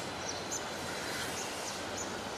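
Steady outdoor background noise with several short, high bird chirps scattered through it.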